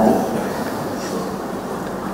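Steady background noise picked up by the lectern microphone in a pause in the talk: an even low rumble and hiss with no distinct events, as the end of a spoken word fades away at the start.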